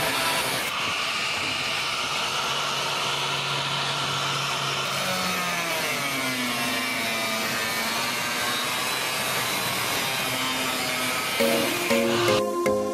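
Handheld angle grinder with a cut-off disc cutting through a metal sheet: a steady grinding whine whose pitch dips about halfway through and then climbs back.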